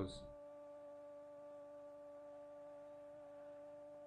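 Faint steady electrical hum: one low tone with a few higher overtones, unchanging throughout.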